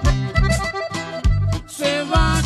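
Instrumental break in an accordion-led Mexican song: accordion melody over a steady bass beat.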